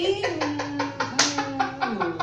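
Video audio playing through a tablet's small speaker: a voice holding long, steady notes over a fast, even run of clicks.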